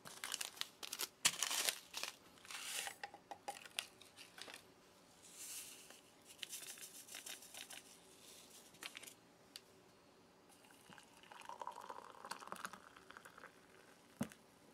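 Quiet crinkling and tearing of paper ration sachets being opened, with a soft rustle near the end as instant coffee and sugar granules are shaken from the sachets into a drinking glass.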